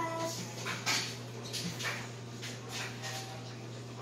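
Hands patting and squeezing raw ground meat into a ball, a soft wet slap about once a second, over a steady low hum. A brief high whine sounds at the very start.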